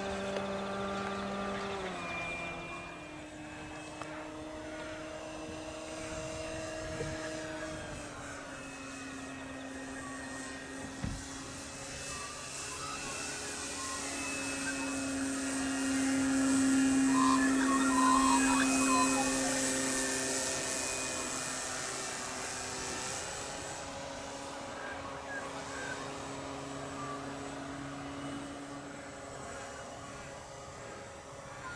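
Engine of a 1/4 scale radio-controlled DH82 Tiger Moth biplane model in flight, a steady droning note. Its pitch steps down about two seconds in and again about eight seconds in as the throttle is eased, and rises again near the last quarter. It grows loudest as the model passes overhead in the middle, then fades as it flies away.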